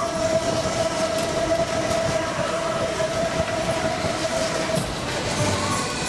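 SDC Matterhorn ride running at speed, its cars rolling round the undulating circular track with a loud, steady rumble of wheels on track. A held high tone runs over the rumble and stops about five seconds in.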